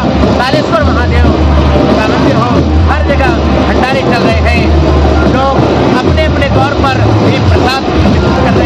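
Loud music from a procession DJ sound system: deep bass notes repeating in a steady pattern under a voice singing with sliding, ornamented pitch.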